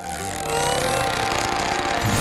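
Cartoon sound effect of a balloon being blown up: a steady rush of air that holds evenly as the balloon swells.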